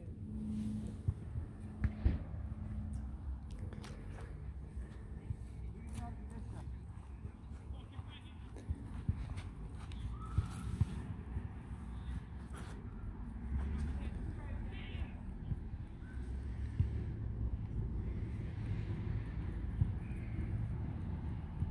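Outdoor background: a steady low rumble with faint voices and a few light knocks and clicks from handling the boundary strap and its ground stake.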